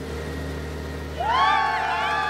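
Forklift engine running steadily, joined about a second in by a crowd cheering with a rising whoop.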